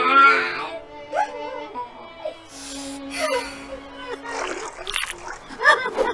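Wordless cartoon character's voice: a loud cry at the start, then wailing and sobbing sounds over background music, with short sound effects in between.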